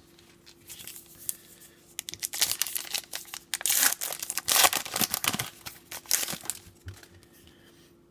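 Wrapper of a pack of 2016 Topps Gypsy Queen baseball cards being torn open and crinkled by hand. The crackling starts about two seconds in, is loudest in the middle and dies away near the end.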